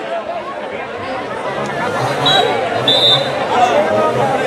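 Spectators chattering around a basketball court, many voices overlapping. A few brief high-pitched tones cut through about two and three seconds in.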